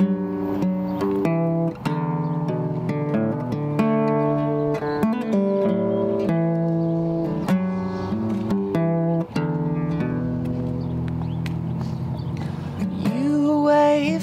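Solo steel-string acoustic guitar playing an instrumental passage, strummed and picked chords changing every second or so. A man's singing voice comes in near the end.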